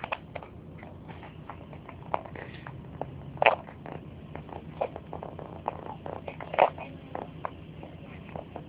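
Irregular clicks and rubbing crackles, typical of handling noise on a hand-held camera's microphone, with two louder ones about three and a half and six and a half seconds in, over a faint low hum.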